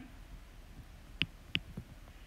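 Stylus tip tapping and sliding on a tablet's glass screen while handwriting, with two faint sharp ticks about a second and a second and a half in over quiet room tone.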